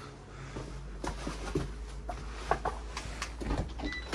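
Light footsteps and a few scattered clicks and knocks as someone reaches a metal entrance door and takes hold of its handle, over a low steady hum.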